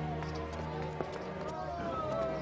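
Background score music with steady low held tones. Some voices murmur under it, and there is one sharp click about halfway through.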